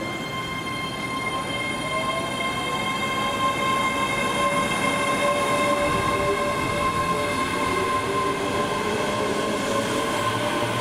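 ScotRail Class 385 electric multiple unit running into the platform. A steady electric whine with several held high tones and a lower tone that slowly rises in pitch, growing louder over the first few seconds as the train draws alongside.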